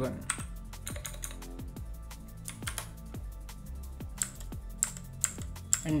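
Computer keyboard being typed on, a quick irregular run of key clicks, over quiet electronic background music with a steady beat.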